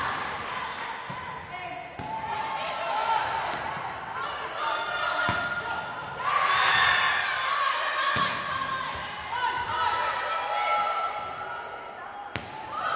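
Volleyball rallies in a gym: the ball is struck with sharp smacks several times, about 1, 2, 5 and 8 seconds in, amid players' shouts and calls echoing in the hall.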